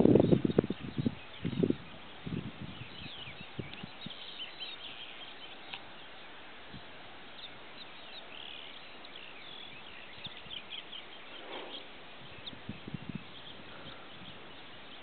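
Faint outdoor ambience: scattered short, high-pitched bird chirps over a soft steady hiss, with a few low knocks in the first two seconds.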